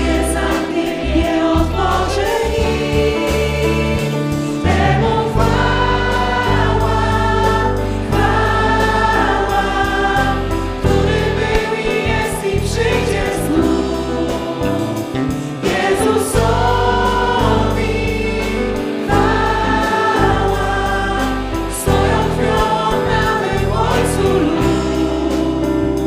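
Live worship band singing and playing a Polish worship song: several women's voices leading the melody over keyboard, drum kit and guitar. The song moves from a verse into its chorus partway through.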